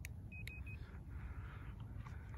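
Low steady outdoor rumble with a quick run of three short, high beeps about half a second in.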